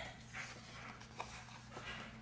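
Faint rustles and a soft click as a glossy sticker sheet is picked up and handled.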